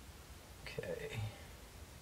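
A woman's brief, quiet murmur or whisper, about a second in, over a steady low hum.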